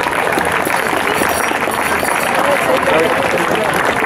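Audience applauding steadily, with voices in the crowd mixed in.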